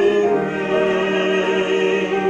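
Live classical vocal music: a mezzo-soprano and a baritone singing sustained notes with vibrato, accompanied by violin and piano.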